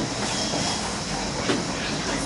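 Steady background hiss and room noise with no speech, and a faint short sound about one and a half seconds in.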